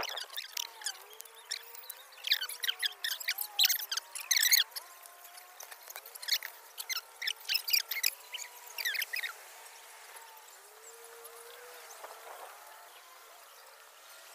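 Small birds chirping: many quick, high-pitched chirps over the first nine seconds or so, thinning out to a faint steady outdoor background.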